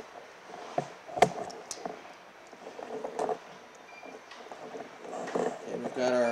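Ring terminals being crimped onto small gauge wires with a hand crimping tool: light clicks and rustling of wire and parts, with one sharp click about a second in.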